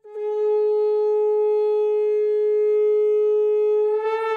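A conch shell (shankha) blown in one long, steady note. It starts abruptly and is held for about four seconds.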